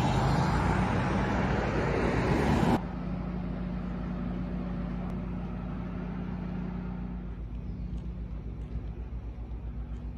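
A pickup truck driving past close by, its engine and tyre noise loud, cut off suddenly about three seconds in. After that a quieter steady low engine-like hum with a low rumble carries on, faintly fluttering near the end.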